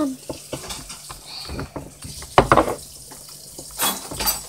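Homemade glue-and-borax slime squished and kneaded by hand in a glass bowl of water: a run of short wet squelches and small splashes, with one louder squelch about two and a half seconds in. This is the squelching noise the slime is being worked to make.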